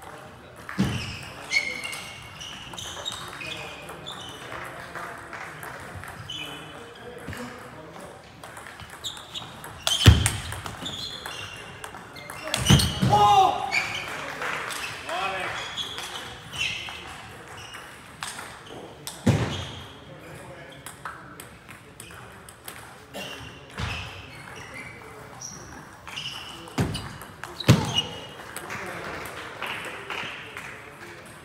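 Table tennis ball clicking off bats and the table in rallies, with a few louder knocks. A voice shouts about halfway through, over chatter in a sports hall.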